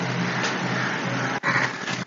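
Water poured in a steady stream from a cup into a bowl of flattened rice (poha) to wash it, breaking off for a moment about one and a half seconds in.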